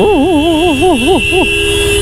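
Vehicle horns in a traffic jam. One horn holds a steady tone. Over it an electronic horn warbles up and down about four times a second, then stops about one and a half seconds in.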